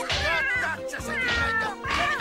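Cartoon cat meowing and yowling in a run of falling cries, the longest about a second in, over lively background music.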